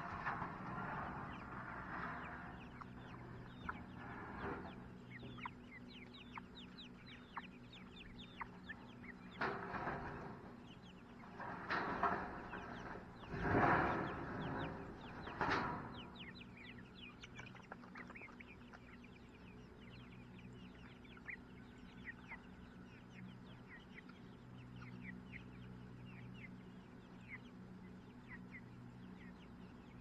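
A flock of young chickens and guinea fowl peeping and clucking, with a run of short high chirps throughout. Several louder bursts of calling come around the middle.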